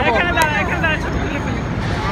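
Busy city street sound: a nearby voice talking indistinctly for the first second or so over a steady hum of crowd and traffic noise.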